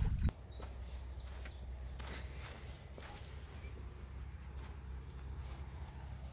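Lake water lapping at a sandy shore, cut off sharply after a moment. Then quiet outdoor sound: a low steady wind rumble on the microphone, faint footsteps in grass, and a few short high chirps in the first couple of seconds.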